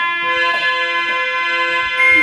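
Harmonium holding a steady chord, with a few light taps on a steel water pot played as a drum.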